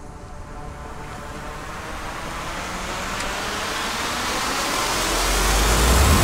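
A rushing noise that swells steadily louder for about six seconds: an edited whoosh-riser sound effect building toward a transition.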